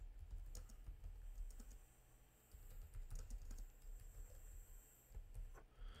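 Faint computer keyboard typing: a run of light key clicks with a brief pause partway through.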